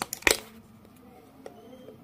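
A sharp click about a third of a second in, then a faint tick about a second and a half in, from the GoPro Hero 11 Black's plastic battery door latch being slid and the door being opened by hand, with faint handling noise.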